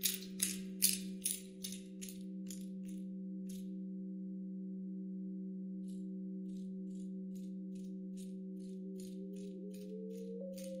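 Soundscape composition of grasshopper chirps over sustained drone tones: a steady low hum with several held higher tones, and short raspy chirps about two or three a second that fade out around three seconds in and come back more faintly after about six seconds. Near the end one of the held tones glides upward.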